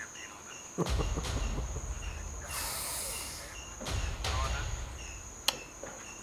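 Crickets chirping in the background: a steady high trill with short chirps repeating evenly, over a low rumble.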